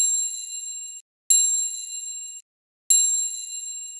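Three bright, high-pitched ding sound effects, each striking sharply and fading over about a second, spaced roughly a second and a half apart. These are the click-and-notification chimes of an animated Like and Subscribe button.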